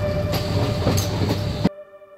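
Cabin noise inside a moving bus: low engine and road rumble with rattling. It cuts off abruptly about three-quarters of the way in.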